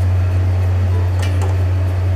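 A steady low hum, with one light metallic click just over a second in as a perforated steel steamer plate is set into a steel pot with tongs.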